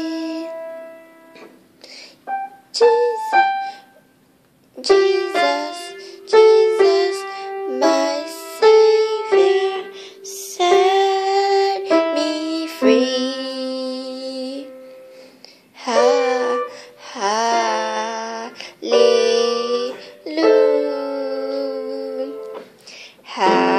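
Piano played by hand, picking out a simple melody note by note in short phrases, with a brief pause about four seconds in. In the second half a voice sings along with the piano.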